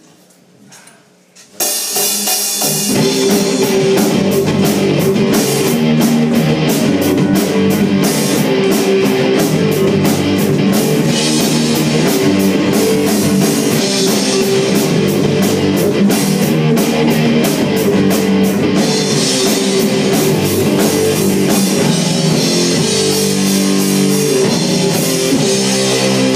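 Live rock band of electric guitar, bass guitar and drum kit starting a song with a sudden full-band entry about a second and a half in, then playing loud with steady cymbal hits.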